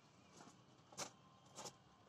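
Near silence, broken by a couple of faint short clicks about a second in and again shortly after.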